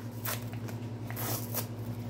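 A taco seasoning packet crinkling and rustling as it is handled and opened, in a few short rustles with the longest after about a second. A steady low hum runs underneath.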